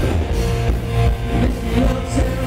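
Live rock band playing loudly: strummed electric guitar over bass and drum kit, with sustained chords ringing through.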